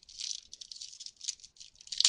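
Foil wrapper of a trading-card pack crinkling in the hands as it is handled and pulled open, in irregular bursts of rustling.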